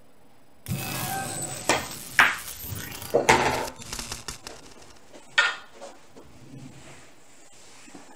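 A pool shot: the cue ball is struck under a second in, then rolls across the cloth with a run of sharp clicks and knocks as the balls meet and hit the cushions, and the object ball is pocketed. A last single knock comes at about five and a half seconds.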